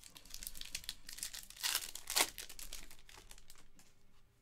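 Foil wrapper of a Panini Select basketball card pack being torn open and crinkled as the cards are pulled out. Dense, sharp crackling, loudest about two seconds in.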